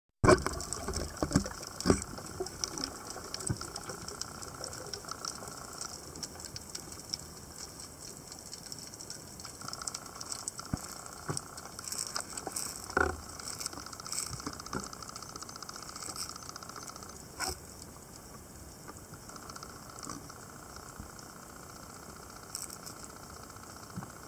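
Muffled underwater sound picked up through a waterproof camera housing: a steady water hiss with scattered clicks and knocks, the sharpest about two, thirteen and seventeen seconds in.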